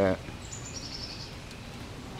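Steady outdoor background noise with a short, fast, high-pitched chirping trill about half a second in.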